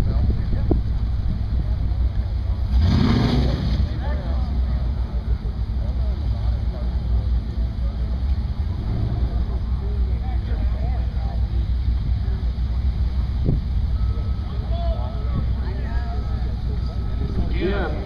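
Low, steady rumble of car engines idling in the drag-strip lanes, with a brief rush of noise about three seconds in and a faint repeating beep near the end.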